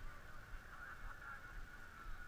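Faint, steady chorus of distant animal calls, many overlapping wavering chirps.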